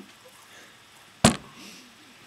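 A single sharp knock of a hand tapping a tabletop about a second in, the signal that 15 seconds of the timed minute have passed.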